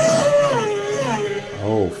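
Racing motorcycle passing at high speed. Its high engine note holds steady, then drops in pitch as the bike goes by, about a third of a second in, and carries on lower.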